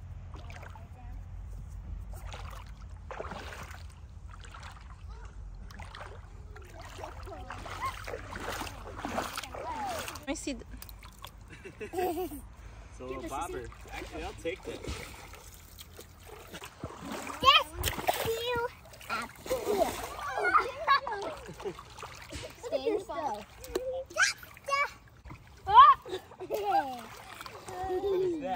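Young children's voices chattering and squealing, with splashing in shallow river water. A low steady rumble lies under the first half.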